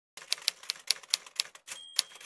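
Typewriter keys striking in a quick, uneven run of clicks, about four or five a second, followed near the end by a short high ding of the carriage-return bell.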